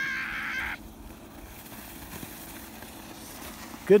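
A child's high-pitched shriek for under a second, over a faint steady low hum, then quiet outdoor background.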